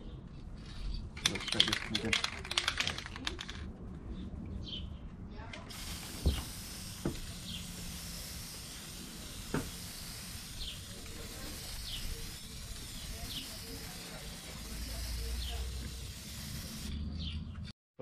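Aerosol can of tail-light tint spray: a couple of seconds of rattling as the can is shaken, then one steady spray hiss lasting about eleven seconds as the third coat goes onto the tail lights, cutting off near the end.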